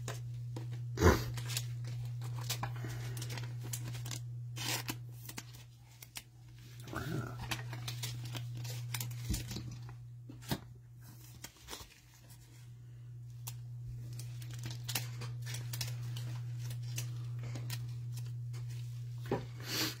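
A trading card in a plastic sleeve being slid into a rigid plastic toploader by gloved hands: scattered clicks and rustles of plastic, the sharpest about a second in, over a steady low hum.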